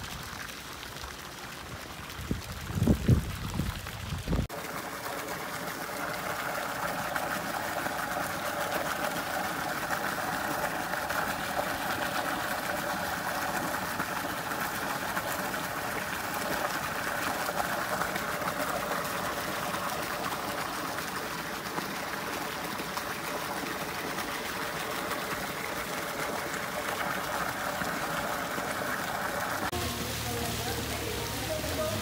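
A stream of water pouring from a stone fountain spout into a pool, a steady splashing rush that sets in suddenly about four seconds in. Before it come a few low rumbling gusts of wind on the microphone.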